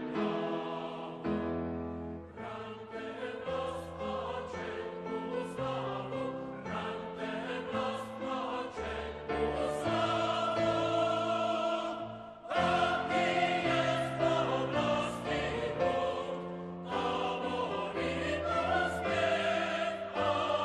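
Choral music: voices singing long held notes over a low sustained accompaniment. It thins out about twelve seconds in, then comes back louder.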